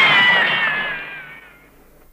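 Ringing tail of a dramatic crash sound effect: a noisy wash with a few high ringing tones sliding slightly downward, fading away over about a second and a half.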